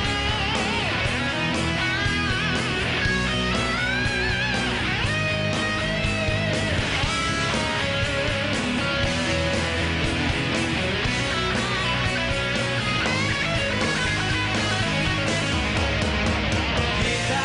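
A hard rock band playing live, led by an electric guitar solo with bent, wavering notes over bass and drums.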